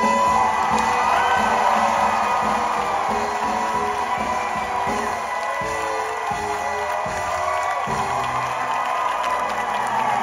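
Live band holding the song's closing chords, with a high note sustained throughout, while an audience cheers and whoops over the music.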